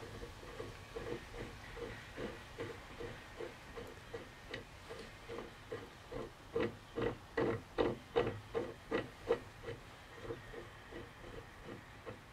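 Steel bearing-puller tool being turned by hand counterclockwise on a transmission shaft: a rhythmic metal-on-metal creak, about three strokes a second, growing louder and sharper about halfway through, then easing off near the end.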